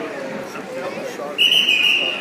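Spectators chattering, then about a second and a half in a referee's whistle sounds one loud, steady blast, stopping the wrestling.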